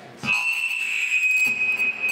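Microphone feedback through the hall's public-address system: a loud, steady, high-pitched squeal that starts about a quarter second in and breaks off near the end. It is the sign of the amplifier gain being set too high.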